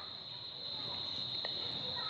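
Steady high-pitched trill held at one pitch, with faint hiss underneath.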